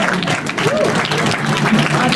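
Audience applauding, with voices from the crowd mixed in.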